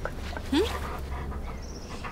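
Large shaggy dog giving one short rising whimper about half a second in, over a low steady background rumble.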